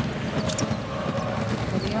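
Basketballs bouncing on a hardwood court, with a sharp knock about half a second in.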